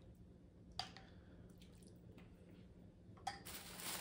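Mostly quiet, with a soft clink of a spoon against a ceramic soup bowl about a second in, then a short wet slurp of pho broth and noodles from the spoon near the end.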